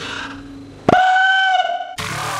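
A single high-pitched tone with overtones starts suddenly about a second in, is held steady for about a second, and is then cut off.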